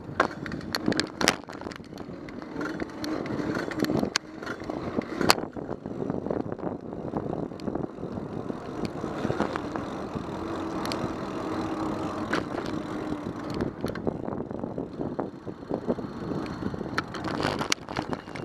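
Bicycle rolling over pavement, heard from a camera mounted on the bike: steady tyre and road noise with rattling knocks from the frame and mount over bumps. A cluster of sharp knocks in the first five seconds or so comes as the wheels cross railway tracks.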